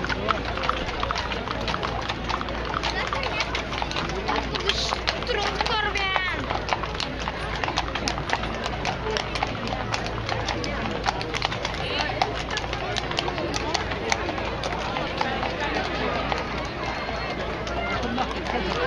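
Horses' hooves clip-clopping at a walk on brick paving as horse-drawn carriages pass, with a crowd chattering all around.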